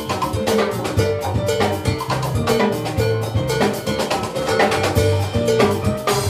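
Salsa band playing live: a busy, steady percussion rhythm over a bass guitar line.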